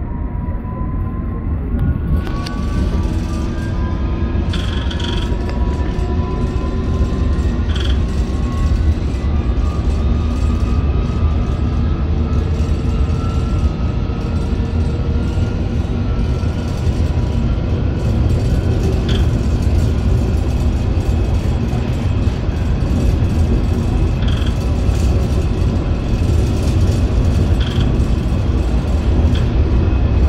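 Metropolitan Line S8 Stock train heard from inside the leading carriage as it picks up speed: traction motor whine of several tones rising in pitch over the first few seconds, then holding steady. Under it runs a steady low rumble of wheels on rail, with a few brief faint clicks.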